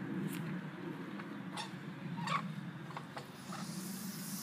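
Hedge leaves rustling and a few light clicks as a plastic handle extension is turned on an outdoor faucet hidden in the bush, over a steady low hum.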